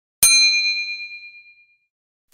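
A single bright bell-like ding, struck once just after the start and ringing away over about a second and a half: a transition sound effect over a title card.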